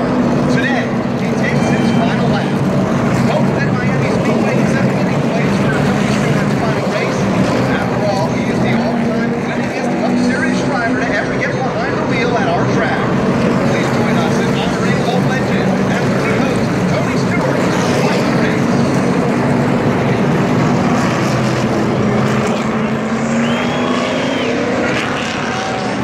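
NASCAR Sprint Cup stock cars' V8 engines running steadily at low speed as the field rolls along pit road, with crowd voices throughout.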